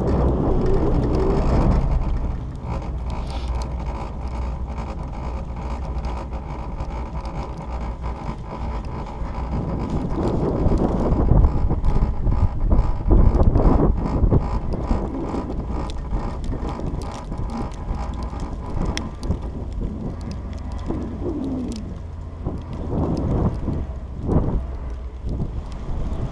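Wind buffeting the microphone on a moving chairlift chair, over the low rumble of the lift. For the first two seconds it is louder, with a clattering rumble as the chair runs under a tower's sheave train. The wind swells again from about ten to fourteen seconds in.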